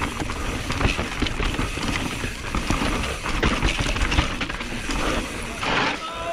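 Radon Swoop 170 enduro mountain bike descending a dirt trail at race pace: tyres on dirt and loose stones, with many short knocks and rattles from the bike over bumps and low wind rumble on the camera microphone. A louder rush of noise comes just before the end.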